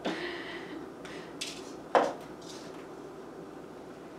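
Tangled thin floral wire being pulled and tugged loose by hand, scraping and rustling, with one sharp click about two seconds in.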